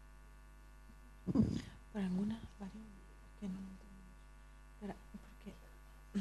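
Steady electrical hum and buzz from a conference room's sound system, with a short louder noise about a second and a half in and a few brief, faint off-microphone voice sounds after it.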